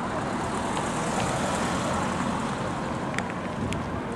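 Steady road traffic noise, an even rush of passing vehicles, with a couple of faint clicks near the end.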